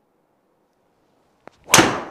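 A driver's clubhead striking a teed golf ball: one sharp, loud crack near the end, ringing on briefly, with a faint tick just before it.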